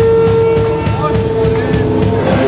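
An electric guitar through its stage amplifier rings on one steady held note that fades out near the end. Under it is a low rumble of amp hum and room noise.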